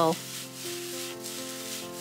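Cauliflower fried rice sizzling and sliding against a skillet as it is tossed, a steady scraping hiss, over soft background music with held notes.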